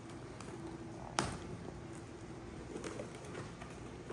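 Cardboard toy packaging being opened by hand: one sharp snap about a second in, then faint handling rustle with a few small clicks.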